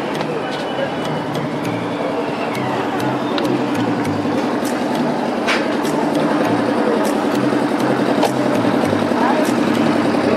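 Busy fairground din: many background voices over a steady low hum like a generator or engine, with music's bass line stepping underneath. A few sharp metallic clanks are heard near the middle.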